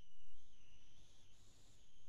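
Faint background hiss from a video-call audio feed, with a thin high-pitched whine that wavers slightly in pitch.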